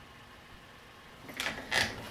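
A short scrape and a couple of clicks, about one and a half seconds in, as a USB cable's plug is pushed into a laptop's port.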